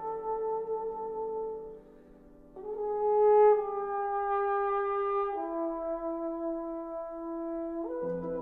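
Tenor trombone holding a long note over a sustained piano chord; both stop a little under two seconds in. After a short pause the trombone alone plays a falling phrase of three notes, the first the loudest and the last held long.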